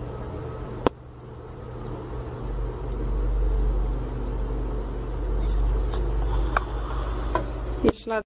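Low rumble with a steady hum beneath it, and a few small clicks from hands and thread being worked in the looper area of an overlock machine; one sharper click comes just under a second in.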